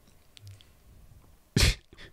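A person sneezing once, a single short loud burst about one and a half seconds in, after a stretch of faint room tone.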